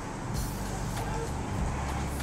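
Steady low background noise with a hum, with no distinct events.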